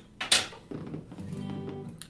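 Acoustic guitar being handled as it is picked up: a single knock about a third of a second in, then its strings ringing softly and steadily.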